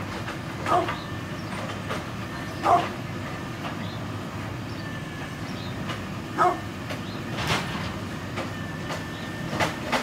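Brindle pit bull barking single, deep woofs, four or five of them spaced a few seconds apart. A steady low rumble runs under them.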